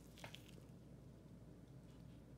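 Near silence: room tone with a low hum and a faint click about a quarter second in.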